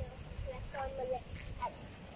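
Brief bits of a person's voice, a few short pitched sounds in the middle, over a steady low rumble of wind on the microphone.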